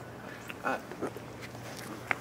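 Quiet outdoor background with a low steady hum, broken by one short spoken word about half a second in and a few faint clicks.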